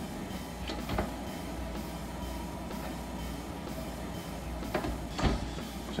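Stainless wall oven door opened and later shut as a piece of leather is taken from the rack: a few clicks and knocks about a second in, and sharper knocks a little before the end, over a steady low hum.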